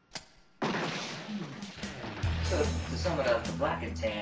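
A brief silence broken by a single click, then room noise with a faint, low voice from about half a second in.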